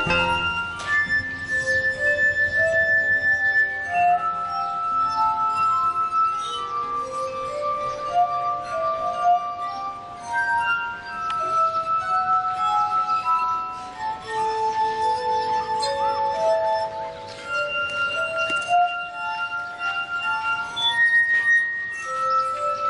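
Glass harp: fingertips rubbing the rims of water-tuned wine glasses, playing a slow melody of long, clear held tones, one or two notes sounding at a time.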